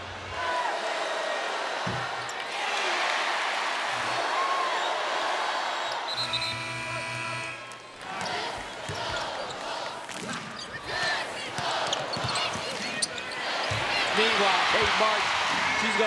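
Basketball arena sound: steady crowd noise with the ball bouncing and sneakers squeaking on the hardwood, the squeaks thickest near the start and in the last few seconds. About six seconds in, a steady horn-like tone sounds for about a second and a half.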